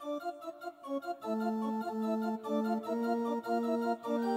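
Electronic keyboard playing freely improvised music: short separate notes for about the first second, then a line of held notes that stay steady without fading, over a sustained low note.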